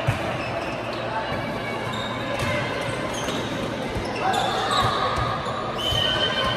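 Light volleyball being played in a large, echoing sports hall: a sharp hit of the light plastic ball just after the start, smaller knocks and shoe sounds through the rally, and players calling out.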